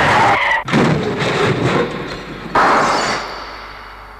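Car tyres squealing in a skid, cut off about half a second in by a sudden loud crash; about two and a half seconds in comes a second sudden burst of a windscreen smashing, which dies away.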